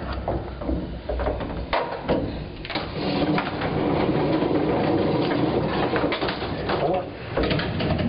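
Elevator cab climbing the missile silo shaft: a steady low hum with scattered clicks and rattles.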